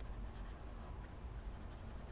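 Paper blending stump rubbed in small circles with light pressure over colored-pencil wax on paper: a soft, steady rubbing.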